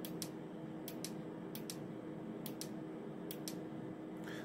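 Faint clicks of a Stryker SR-955HP radio's function button being pressed again and again, in about five quick press-and-release pairs roughly once a second, stepping through the radio's settings menu.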